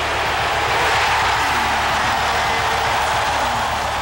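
Basketball arena crowd cheering, loud and steady.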